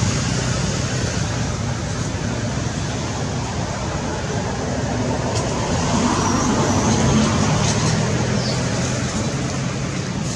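A steady low rumble with a droning hum, like a running motor or road traffic, swelling a little about halfway through.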